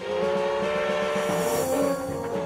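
Steam locomotive whistle sounding one long blast of several tones at once, over a hiss.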